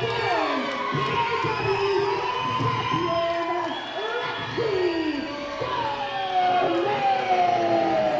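Wrestling crowd shouting and cheering, many voices overlapping without a break.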